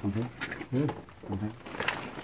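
Quiet speech: a man's low voice in four or five short, broken syllables with pauses between them.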